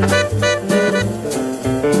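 Live hard-bop jazz from a quintet of trumpet, tenor saxophone, piano, double bass and drums. A bass line moves note by note under repeated cymbal strokes, with horn or piano lines above.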